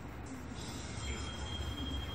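Anime episode soundtrack playing from a laptop's speakers: a low rumble, joined about a second in by a thin, steady high tone.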